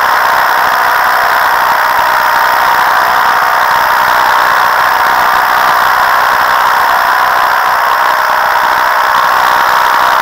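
Paramotor's two-stroke engine and propeller running steadily in flight: a loud, constant drone.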